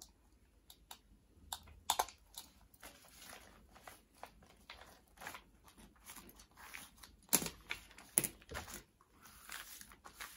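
Thin clear plastic sheet crinkling and rustling under the hands as sticky tape is pressed onto its corners and the sheet is smoothed flat, with scattered light crackles and two sharper snaps about seven and eight seconds in.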